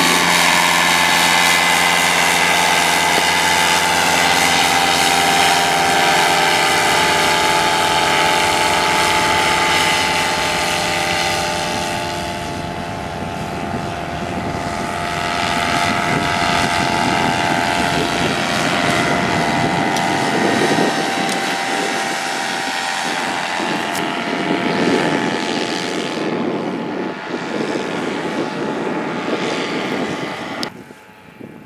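Paramotor's two-stroke engine and propeller running at high power as it climbs out just after takeoff, a steady loud buzzing note. From about twelve seconds in the note is a little fainter and rougher, with more rushing noise as the machine flies off.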